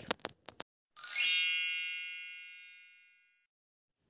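A few light clicks, then about a second in a single bright bell-like ding that rings and fades away over about two seconds.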